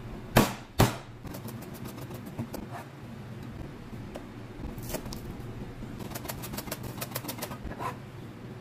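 Cleaver striking a plastic cutting board: two loud whacks about half a second apart, then runs of fast, even chopping strokes through garlic and then green onions.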